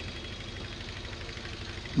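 Steady low background noise: a faint hum and hiss with no distinct event.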